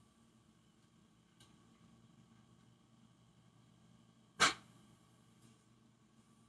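A dog indoors making one short, sudden sound, about four and a half seconds in, over faint room tone.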